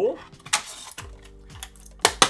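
Stiff plastic blister packaging handled and pried at by hand: a brief crinkle, then a few sharp plastic clicks and cracks, the loudest near the end.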